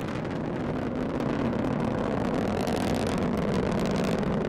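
Delta IV Heavy rocket's three RS-68 engines in flight: a steady rumble that grows slightly louder after about a second. The two strap-on boosters are at full thrust and the core booster is throttled down to partial thrust.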